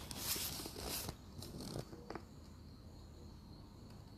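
Handling noise of a smartphone being moved and set in place: a rustling, bumping first second, then a few light clicks. A faint, steady high tone continues underneath.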